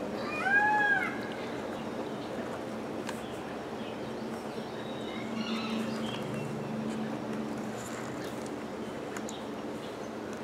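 A single short animal call, rising then falling in pitch, shortly after the start. After it comes faint rustling of hands loosening a root-bound pepper plant's roots and working potting soil.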